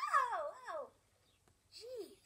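High-pitched voices with quickly wavering pitch, several at once, dying away about a second in; one short rising-and-falling vocal sound near the end.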